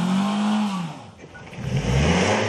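A Nissan sedan's engine revving hard while the car is stuck in deep mud, its wheels spinning. The revs climb to a peak about half a second in and fall away, then climb again near the end.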